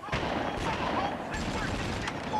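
Rapid gunfire, the shots coming too fast to pick apart, with voices shouting over it.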